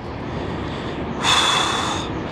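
A person's sharp breath, a snort-like exhale close to the microphone, lasting under a second near the end, over a steady low background rumble.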